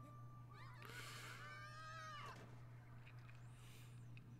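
A faint, high-pitched, drawn-out meow-like cry, about two seconds long, rising at the start and falling away at the end, over a low steady hum.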